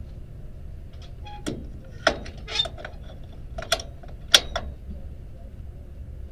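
Race-car cockpit latches and fittings being handled: about five sharp metallic clicks and clanks spread over a few seconds, over a low steady rumble.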